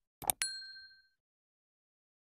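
Subscribe-animation sound effect: a quick double mouse click, then a bright notification-bell ding that rings out and fades within about two-thirds of a second.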